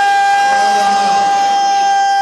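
A man's voice holding one long, high, loud note through the loudspeakers, unwavering in pitch, a drawn-out call of the kind a majlis speaker holds before the crowd answers.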